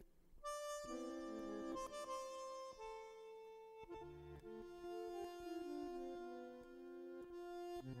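Bandoneon playing slow, sustained chords and a melody line, coming in about half a second in after a brief pause.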